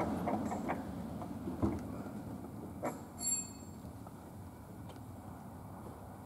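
Quiet room tone with a few faint clicks and light knocks, and a brief high squeak about three seconds in.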